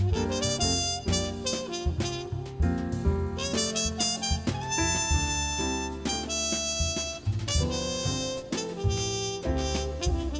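Jazz quartet of muted trumpet, piano, double bass and drums playing a ballad. The trumpet carries the melody, holding one long note in the middle, over piano chords and a walking low bass line.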